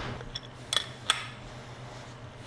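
Three short metallic clinks as an adjustable wrench is set onto the steel cap of a motorcycle fork tube.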